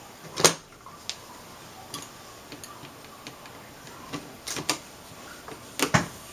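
Scattered light clicks and taps, the loudest about half a second in and a few more near the end, as the LG Philips LM190E08 LCD glass panel is handled and set down onto its backlight frame.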